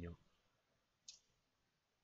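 Near silence with one short, sharp click about a second in: a clear plastic set square being set down on the drawing sheet against the ruler.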